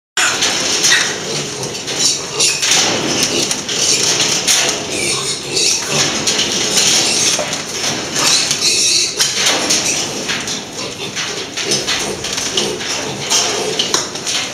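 A pen of piglets squealing and grunting, with a continual clatter of trotters on metal grating and wire mesh as a piglet climbs the pen wall.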